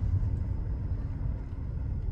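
Steady low rumble of a car's engine and road noise, heard inside the cabin while driving.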